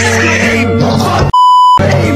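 Music with overlapping shouting voices, cut about a second and a half in by a loud, steady, single-pitched censor bleep that lasts about half a second before the music returns.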